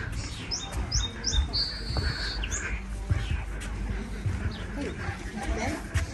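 A small bird chirping: a few quick down-slurred high notes, then a held whistle about a second and a half in, with fainter chirps later. Under it, wind rumble on the microphone and scattered low thumps of footsteps on a wooden boardwalk.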